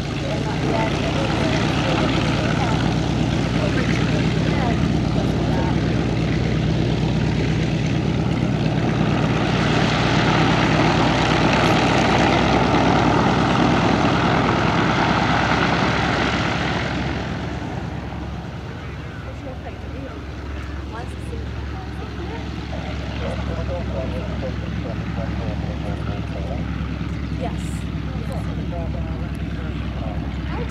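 Hawker Fury II's Bristol Centaurus XVII, an 18-cylinder sleeve-valve radial engine, running at taxiing power: a steady low drone with propeller noise. It swells louder and hissier for several seconds around the middle, then settles back to a lower drone.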